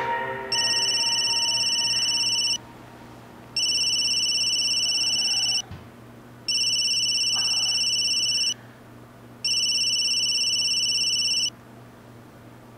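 Mobile phone ringing: an electronic trilling ringtone, four rings of about two seconds each with a pause of about a second between them, stopping when the call is answered.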